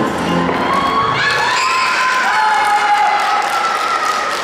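Routine music ends in the first half second, then spectators cheer with high-pitched shouts, several voices joining in with long, drawn-out calls.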